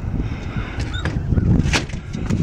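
Low rumbling handling and wind noise on a phone microphone while a glass storm door is pulled open, with one sharp click near the end, typical of the door's latch or handle.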